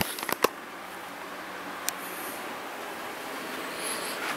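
Handheld camera being moved: a few clicks and knocks in the first half-second and one sharp tick about two seconds in, over a steady hiss.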